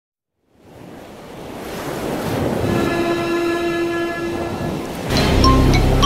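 Intro theme: a swelling wash of noise with a long held horn-like tone in the middle, then music with a heavy bass beat and short bright mallet notes cutting in about five seconds in.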